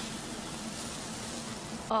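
Korean pancake frying in oil: a steady sizzle.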